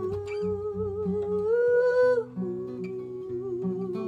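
A woman singing long wordless notes over acoustic guitar chords. Her voice climbs to a higher held note about halfway through, then settles back down.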